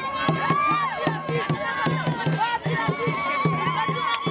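Traditional music: high voices singing and gliding up and down in pitch, over a low note pulsing at a steady beat, with sharp strokes throughout.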